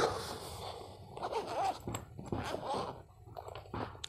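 Zipper of a zippered hard-shell carrying case being pulled open in a run of short, irregular scratchy strokes.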